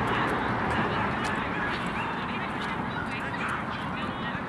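Open-air sound of a youth soccer game: a steady rushing noise with faint, distant shouts and calls from the players, and a few light ticks.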